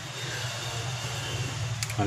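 Steady low background hum with hiss, and one short light click near the end.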